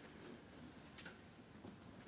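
Near silence: room tone in a small room, with one faint, sharp click about a second in.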